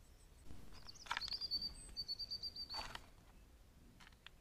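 A bird's fast, even trill on one high pitch, lasting about two seconds. It is bracketed by two short clicks.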